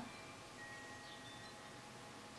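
Near silence: quiet room tone with a few faint, high ringing tones like a chime, about half a second to a second and a half in.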